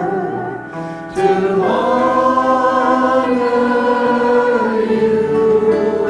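Church choir singing a hymn in long held notes, with a new line starting about a second in.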